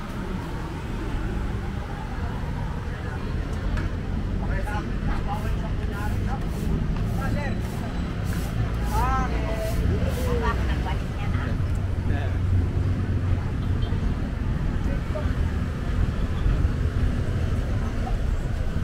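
Outdoor neighbourhood ambience: scattered voices of people nearby, one calling out about halfway through, over a steady low rumble of road traffic.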